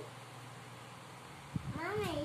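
A young child's short wordless vocal sound, rising and then falling in pitch like a meow, about a second and a half in, just after a soft knock. A low steady hum runs underneath.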